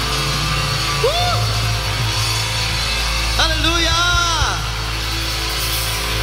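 Live church worship band playing a steady bass-heavy groove, with a man's cry of 'Uh!' about a second in and a longer rising-and-falling vocal cry midway, as the band leads into the next song.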